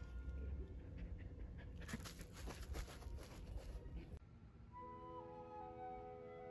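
A dog panting quickly for about two seconds, cutting off abruptly about four seconds in. Soft background music runs underneath, and a flute melody comes in near the end.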